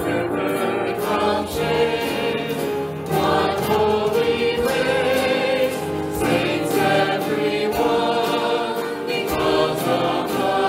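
Live worship song: several voices singing together, a woman's voice among them, over a strummed acoustic guitar keeping a steady rhythm.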